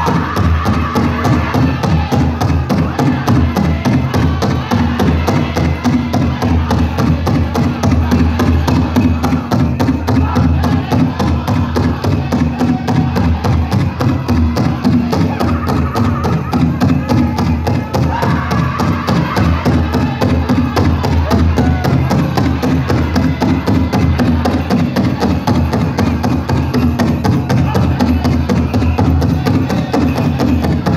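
A powwow drum group singing a fancy dance song, with a fast, steady beat struck on a shared big drum under high-pitched group singing.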